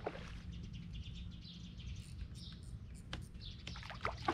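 Steady low wind rumble on the microphone with faint high bird chirps, and a sharp click about three seconds in, while a hooked bass is played at the boat.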